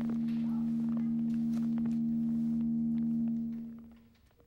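A steady low drone tone with faint overtones, fading out near the end, with faint scattered clicks beneath it.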